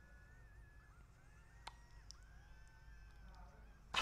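Very faint, drawn-out high-pitched cries of animated characters in anime playback, several long held calls one after another over a low hum.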